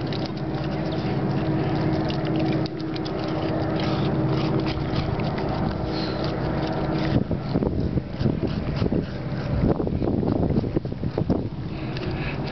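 A steady motor hum like an idling engine runs throughout. From about seven seconds in come irregular clicks and crunches as a golden retriever licks and chews crumbs of a frozen Frosty Paws dog treat off the court surface.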